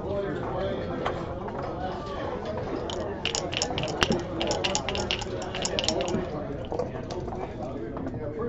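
Backgammon dice shaken in a dice cup and rolled onto the board: a rapid rattle of hard clicks lasting about three seconds, starting about three seconds in. Low room chatter runs underneath.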